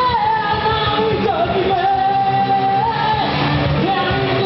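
Live rock band playing loudly, drums and electric guitars, with a melody line that holds a long note through the middle and slides in pitch at either end of it.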